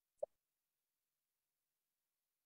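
Near silence, broken once just after the start by a single short, soft pop.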